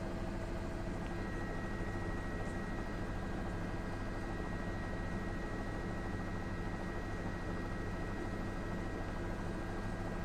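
News helicopter's engine and rotor noise heard from inside the cabin: a steady drone with a few steady low tones, unchanging throughout.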